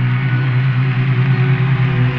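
A rock band's closing chord held and ringing out, a steady low note without singing or drums.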